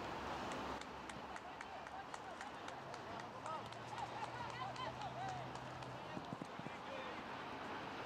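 Soccer players and sideline voices shouting and calling across the field in short bursts over open-air field noise, with scattered sharp clicks.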